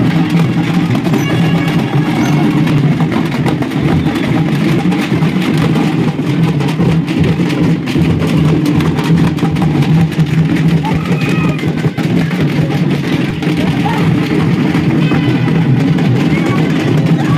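A street band of large strap-carried drums beaten continuously with sticks in a dense, rapid rhythm, with crowd voices mixed in.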